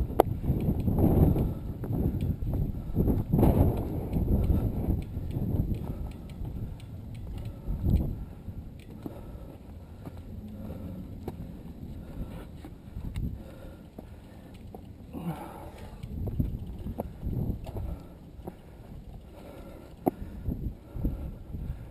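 A mountain bike rattling and knocking over a rocky trail, with many sharp clicks over a low rumble of wind and handling noise on the microphone, louder in the first half.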